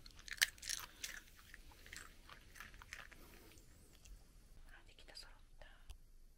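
Toy poodle crunching and chewing a small dry treat: a run of short, sharp crunches, most in the first three seconds, thinning to faint scattered clicks.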